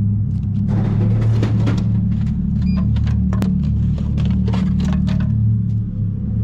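A drinks vending machine dispenses a can: clicks, then a clatter and knocks as the can drops into the tray and is taken out, with a brief beep and a sharp click partway through. A loud steady low drone runs underneath throughout.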